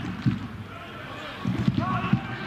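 Football match sound from the stadium: crowd noise with voices calling out, and a dull thud of the ball being kicked.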